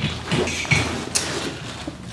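Nylon backpack being handled and turned, its fabric and straps rustling, with a few small knocks.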